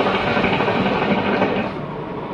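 Hookah bubbling steadily as smoke is drawn through the water in its base, stopping shortly before the end.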